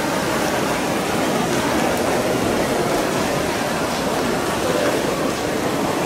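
Steady wash of noise during a swimming race: splashing from breaststroke swimmers mixed with spectator crowd noise, with no single sound standing out.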